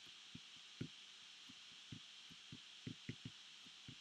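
Faint, irregular soft taps of a pen striking the writing surface as someone writes, about a dozen over a few seconds, above a steady faint hiss.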